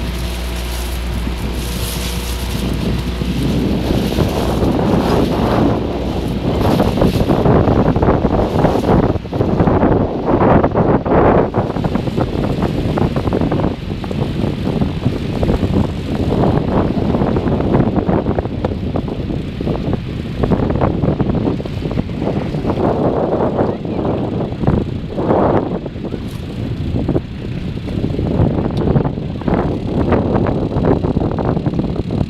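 Wind buffeting the microphone in gusts on a moving motorboat, over the boat's engine running. A steady engine hum is clear for the first few seconds before the wind noise covers it.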